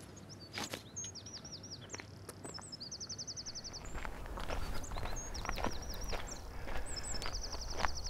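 A small songbird singing twice: a few quick down-slurred notes, then a fast, even trill lasting about a second. Footsteps crunch on the concrete slipway in the first half, and a low rumble comes in from about halfway.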